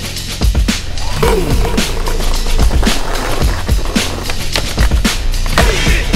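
Skateboard sounds: urethane wheels rolling on stone paving and the board clacking against the ground and a concrete ledge, mixed under a music track.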